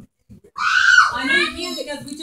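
A child's high-pitched excited scream about half a second in, running straight into excited voices.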